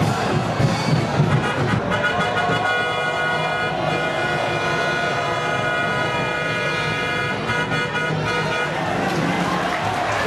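Football stadium crowd noise with a long horn blast from the stands: several steady tones held together from about two seconds in until near the end.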